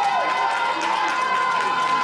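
Voices holding one long note, steady in pitch, over background crowd noise.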